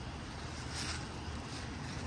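Steady low outdoor rumble of traffic and wind noise on the microphone, with no distinct sudden sound standing out.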